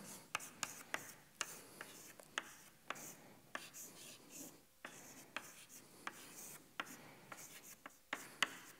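Chalk writing on a chalkboard: faint, irregular sharp taps and short scratches as each stroke of an equation is written.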